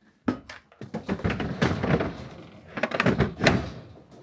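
A quick run of hard knocks and clunks, several a second, from gear being handled and moved about in a box truck's cargo area. The loudest knocks come in the middle and at about three and a half seconds.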